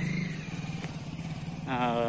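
A vehicle engine running steadily at idle, a low continuous hum, with a short voiced sound from a person near the end.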